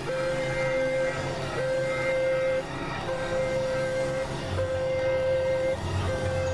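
Experimental electronic synthesizer music: a held, fairly high synth tone repeats in notes about a second long with short breaks, over a low pulsing drone that grows stronger in the second half.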